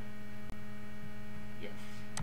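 Steady electrical mains hum on the recording, with a momentary dropout about half a second in.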